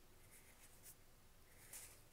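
Near silence with a few faint, brief rustles of trading cards being handled and slid apart.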